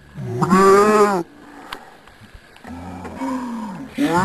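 A person's cry or laugh played back slowed down, turned into a deep, drawn-out, roar-like groan about a second long that rises and falls in pitch. A second, fainter one comes near the end.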